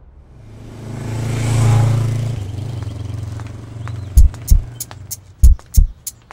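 A motor vehicle engine passing by, swelling to its loudest about two seconds in and then fading. From about four seconds in, background music with sharp, heavy percussive hits.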